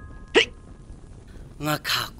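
A boy's single short hiccup, a quick upward-sweeping sound about half a second in; he starts speaking near the end.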